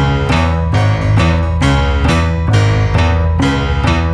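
Instrumental intro of a rock song: guitar chords struck in a steady, even rhythm over a heavy bass line, with no vocals yet.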